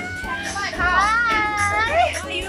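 A high-pitched voice calls out in drawn-out tones that bend up and down, over background music with a steady bass.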